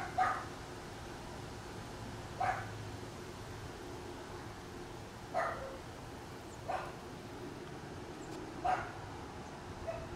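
A dog barking in single barks, about six of them spaced one to three seconds apart, over a faint steady hum.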